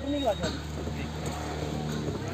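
Brief faint voices, then a low, steady engine hum.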